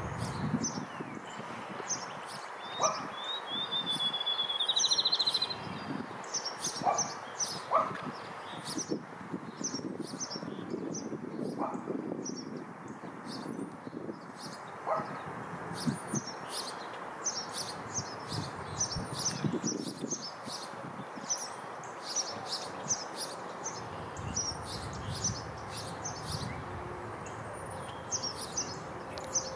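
Field sparrow song about four seconds in: a series of clear whistled notes that speed up into a short, fast trill. Other small birds chirp high and rapidly throughout, over steady background noise.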